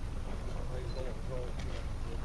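Wind rumbling on the microphone, with faint voices of people talking in the background.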